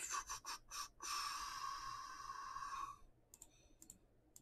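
Computer keyboard keystrokes: a quick run of clicks, then a steady noise lasting about two seconds, then a few fainter key clicks near the end.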